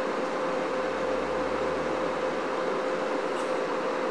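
Steady cabin noise of a jet airliner in flight: an even rush of engine and airflow noise with a constant mid-pitched hum running through it.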